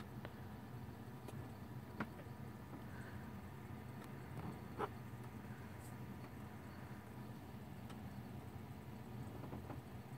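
Faint steady hum of a Dell Dimension 4600 desktop computer running through its startup self-test, with two small clicks, one about two seconds in and another a few seconds later.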